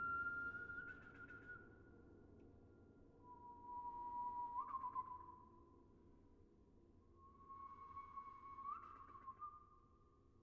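Faint whistled notes from the pianist: three long held tones, the second and third each ending in a short upward scoop. Underneath is the low sustained ring of the grand piano's strings.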